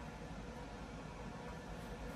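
Faint, steady hiss of room tone, with no distinct sound standing out.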